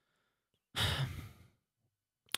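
A man sighs once, a breathy exhale about a second in that trails off.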